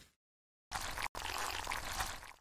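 Liquid pouring, an even splashing hiss that starts after a short silent gap and is briefly cut off just after one second in.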